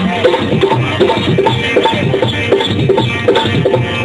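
Rajasthani bhajan music: a hand drum keeps a steady rhythm under sustained melody lines.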